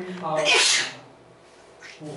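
A single loud sneeze about half a second in: a brief rising voiced 'ah' then a sharp hissing burst, louder than the speech around it.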